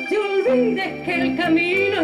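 A woman singing live into a microphone in long, wavering held notes, backed by an acoustic folk band of bass guitar, acoustic guitar, cajón and flute.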